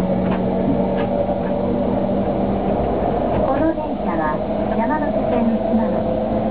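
Inside a moving JR E231-series Yamanote Line carriage: the train's steady running drone with constant hum tones, and passengers' voices talking over it about halfway through.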